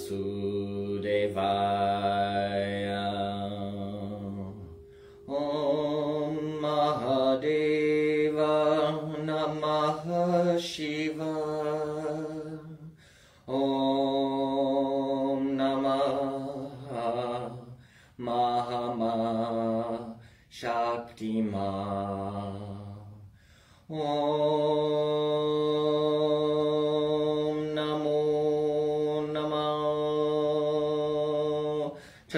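A low male voice chanting a mantra in slow, long held notes, with short breaks for breath between phrases; the last note is held steady for about six seconds.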